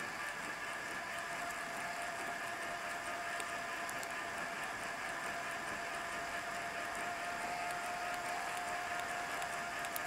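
Mountain bike rolling steadily along a paved trail: even tyre and drivetrain noise with a faint steady whine and scattered light ticks.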